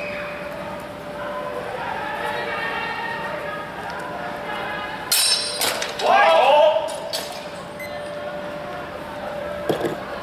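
Steel training longswords clashing in a fencing bout: a sharp ringing clang about five seconds in, followed by about a second of louder clatter, and a shorter knock near the end, over murmuring voices.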